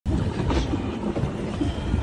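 Safari vehicle's engine running with a low, steady rumble and some rattling.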